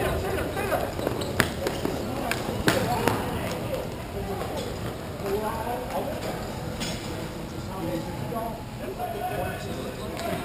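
Hockey play in an echoing indoor rink: sharp stick clacks a few times in the first three seconds and once more near seven seconds, over indistinct players' calls.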